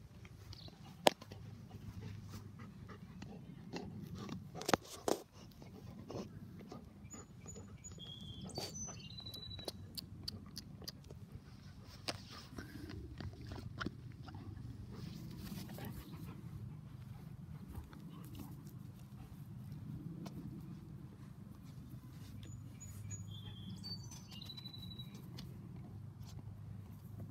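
A golden retriever chewing on a ball: faint, irregular clicks and gnawing, with a few sharper clicks.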